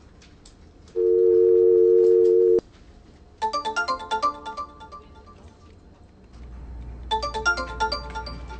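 A telephone tone, two steady pitches held together for about a second and a half, as the call is placed. Then the iPhone's ringtone sounds, a quick melodic run of short bright notes, twice.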